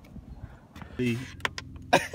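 Low steady rumble inside a car cabin with a faint steady hum, and a sharp click near the end.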